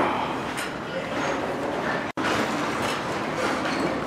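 Indistinct voices over a steady rushing, rumbling background. The sound cuts out for an instant about two seconds in.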